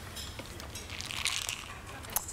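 Handling noise: soft rustling with a few light clicks, strongest about a second in, as a plastic weekly pill box is picked up.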